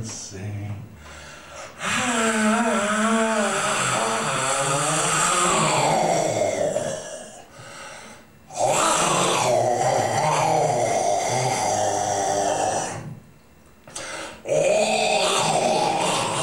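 Male voice making long wordless vocal sounds into a handheld microphone, sound poetry rather than words: three stretches of about four to five seconds each, separated by short pauses. The first has a wavering pitch; the later ones are rougher and noisier.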